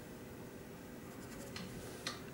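Faint scratching of a paintbrush dabbing oil paint onto a primed cardboard panel, heard as brief strokes about one and a half seconds in, over a low steady hum.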